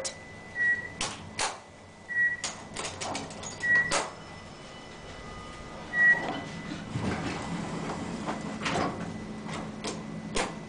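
Inside an Otis traction elevator car: four short, high electronic beeps at the same pitch, a second or two apart, among scattered clicks and knocks. From about seven seconds in a low, steady hum sets in, the car's drive running.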